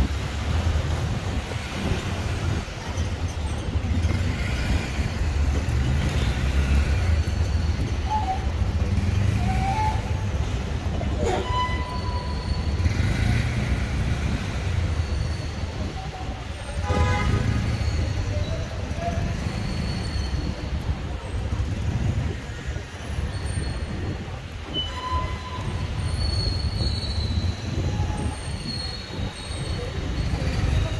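Busy street ambience: steady traffic noise from cars on the road alongside, with a few short horn-like tones and a couple of brief knocks.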